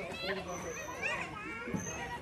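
Children playing: high-pitched child voices calling and chattering, with no clear words.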